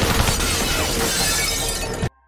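A glass railing shattering under pistol fire, a dense, continuous crash of breaking glass mixed with gunshots that cuts off abruptly at the end.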